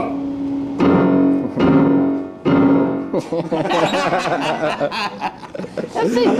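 Grand piano: three loud chords struck about a second apart, each left ringing. The playing then breaks off into talk and laughter.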